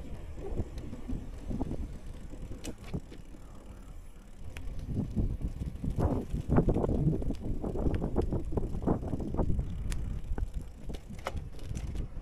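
Bicycle rolling over stone and brick paving: a low tyre rumble with many small clicks and rattles from the bike. It gets louder and busier from about five seconds in.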